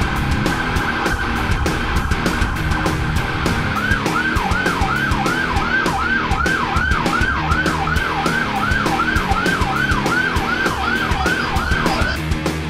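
Electronic siren of an escort vehicle with a roof light bar: a fast warbling tone for about four seconds, then switching to a yelp of quick repeated pitch sweeps, about three a second.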